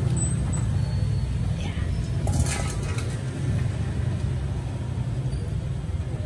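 A steady low rumble in the background, with a few brief scraping clicks about two to three seconds in from a hand tool working at the motorcycle engine's oil drain hole.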